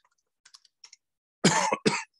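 A man coughs twice into his fist, about a second and a half in, after a near-silent stretch with a few faint clicks.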